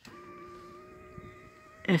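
Electric RV awning motor running to retract the power awning: a steady, even whine.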